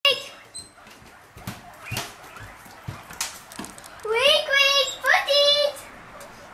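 Guinea pigs wheeking: two long, loud, high-pitched squealing calls, each rising in pitch, in the second half. This is the begging call guinea pigs make when they expect food. A few soft knocks come before the calls.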